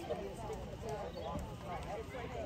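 Several young girls' voices chattering and talking over one another, with no single voice standing out.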